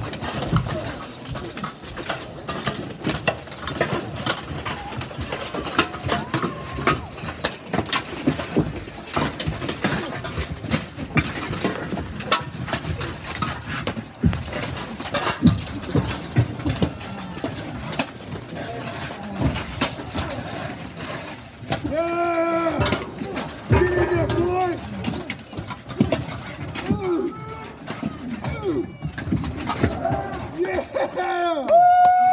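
Steel armour and weapons clanking and knocking over and over in a close armoured melee, with irregular sharp metal impacts. Voices call out and shout a little over twenty seconds in.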